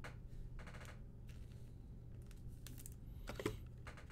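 A few faint, light clicks and taps, the loudest about three and a half seconds in, over a steady low hum.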